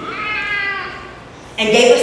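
A high-pitched, drawn-out vocal cry lasting under a second, rising a little at the start and then fading. After a short pause a woman's preaching voice comes back near the end.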